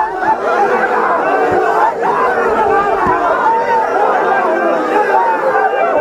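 A large crowd of men shouting and chanting together, many voices overlapping in a continuous din.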